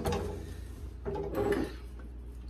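Handling noises from ladling broth into canning jars: a short clatter of the plastic ladle in the broth tub at the start, then a scraping sound about a second in as the plastic funnel is handled on the rim of the glass jar.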